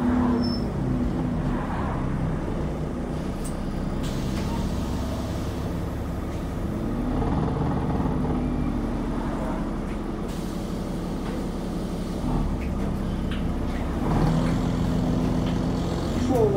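Interior sound of a double-decker bus on the move, heard from the lower deck: the engine's low drone steady, its pitch falling and rising a few times as the bus slows and pulls away.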